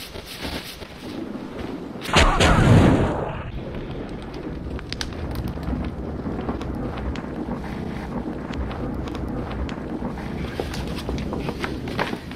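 A loud whoosh of flames bursting up in a fireplace about two seconds in, lasting about a second and a half, followed by a steady crackle of the fire.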